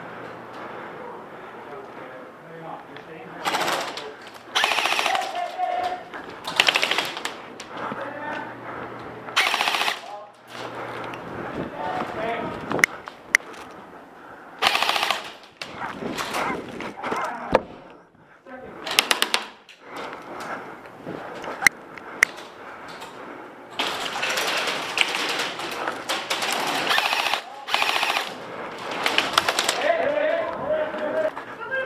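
Airsoft electric rifles (AEGs) firing repeated bursts of full-auto, each lasting from half a second to a few seconds, with a few single sharp cracks between. The longest run of fire comes in the last six seconds.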